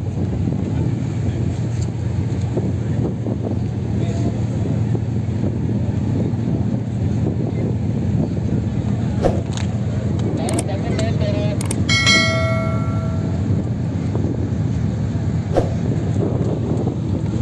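Lamborghini Huracán's V10 engine running at a steady low idle as the car rolls slowly, with no revving. A short horn-like tone sounds for about a second and a half about three quarters of the way through.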